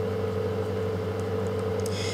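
Steady low background hum with a faint higher tone above it, even and unchanging throughout.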